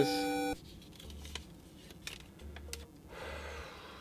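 A held electronic tone cuts off suddenly about half a second in. A quiet stretch follows, with a few faint clicks and short patches of low hum.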